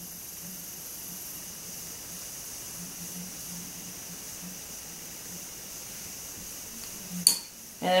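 Quiet, steady hiss with a faint low hum. Near the end comes a single sharp click, the tap of wooden knitting needles.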